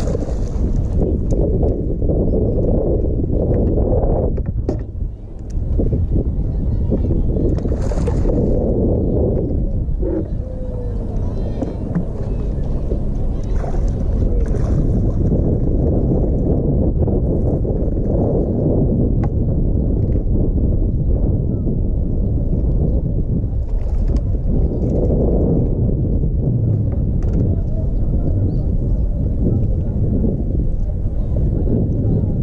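Wind buffeting the microphone as a steady low rumble, with water sloshing against a boat hull.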